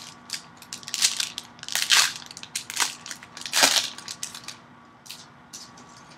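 Plastic wrapper of a pack of Panini Prizm basketball cards crinkling and tearing as it is opened by hand: a run of irregular crackles, loudest in the first four seconds and thinning out toward the end.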